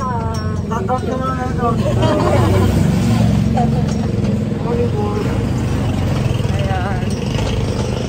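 Engine and road rumble of a moving small passenger vehicle, heard from inside its open-sided cab, getting louder about two seconds in. Voices talk over it near the start and again near the end.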